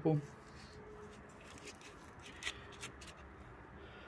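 A few faint, brief clicks and taps over quiet room tone, as a small metal nut from an anti-roll bar link is handled in a gloved hand.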